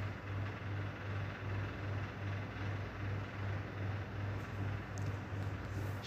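A low machine hum throbbing about three times a second, under a faint steady hiss.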